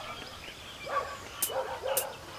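Faint short yelping animal calls, a few in a row about a second in and again near the end, with two sharp clicks between them.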